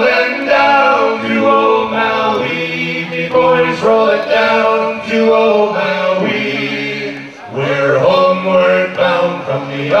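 Several men singing unaccompanied in harmony, a folk song performed a cappella on stage, with a brief dip between phrases about seven seconds in.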